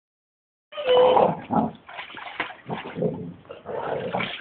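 Water splashing and sloshing in a plastic kiddie paddling pool as a dog wades and moves about in it, in irregular bursts, with a brief dog vocal sound about a second in.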